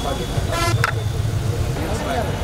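A car horn sounds a brief toot about half a second in, over crowd chatter and a steady low rumble.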